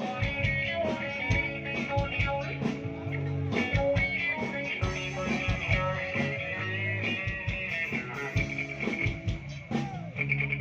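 Live rock band playing: electric guitar and bass guitar over a drum kit, with steady drum hits throughout.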